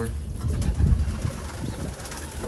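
Domestic pigeons cooing in a loft, low and warbling, over a steady low rumble.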